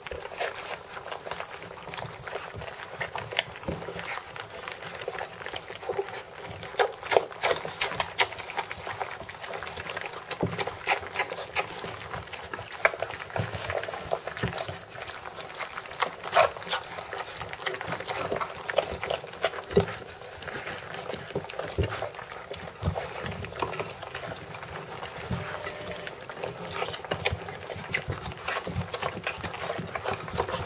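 Rhodesian Ridgeback puppies eating raw minced beef: a dense, continuous run of short smacking and chewing clicks from several pups at once.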